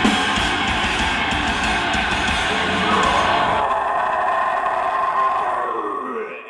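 Live heavy band, distorted electric guitar and drums, playing loud; a little over halfway through, the drums and low end stop and a sustained distorted guitar tone rings on alone, sliding down in pitch near the end as the song finishes.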